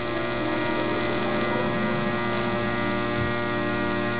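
Bedini pulse motor with an audio-transformer coil running fast, giving a steady electrical buzzing hum of many tones whose pitch holds level. Its second winding is putting out high voltage that lights a fluorescent tube.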